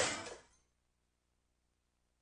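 Mixed voices and instruments from a children's performance fade out within the first half second, leaving near silence with a faint low hum.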